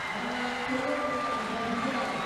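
Steady low background noise of the rink's surroundings, with faint held tones underneath and no distinct event.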